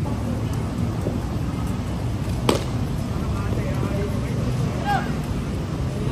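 Cricket bat striking the ball once, a single sharp crack about halfway through, over a steady low rumble of background noise.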